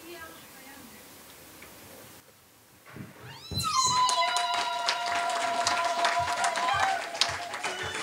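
Congregation ululating in long, high, held calls, with clapping, breaking out about three and a half seconds in after faint murmuring.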